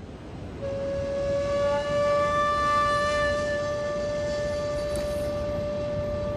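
Outdoor city background noise, joined about half a second in by one steady held tone with many overtones that rises slightly at first and then stays at one pitch.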